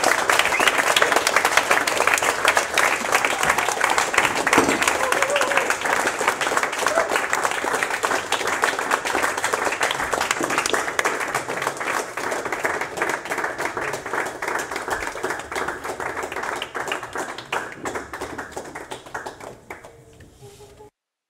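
Audience applauding, a dense patter of clapping that slowly weakens and thins out near the end.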